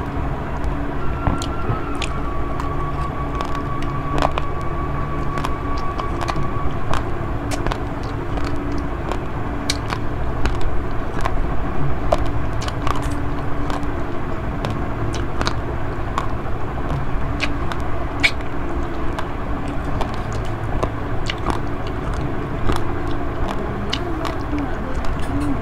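Close-up chewing of basmati rice mixed with Milo, with many short sharp clicks of a metal spoon scraping and tapping against the bowl. These sound over a steady low rumble in the background.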